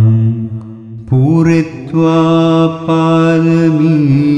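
A single voice chanting Pali Buddhist pirith verses in a slow, melodic recitation. A held note fades into a short lull, then about a second in a new phrase starts with a rising slide and carries on in long sustained notes.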